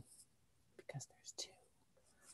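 Near silence: a pause in speech, with a few faint, brief breathy vocal sounds about a second in.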